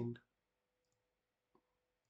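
The last syllable of a spoken word, then near silence with a faint steady hum and a single short, faint click about one and a half seconds in.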